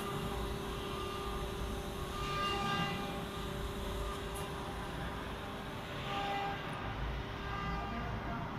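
CNC router machine running with a steady whine over a low rumble. Short, louder whines come about two and a half and six seconds in.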